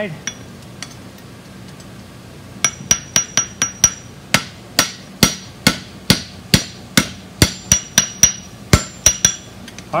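Blacksmith's hand hammer striking a red-hot steel hook on an anvil, forging the bend of the hook. A rapid series of blows, about three a second, begins about two and a half seconds in, with the anvil ringing after some of them.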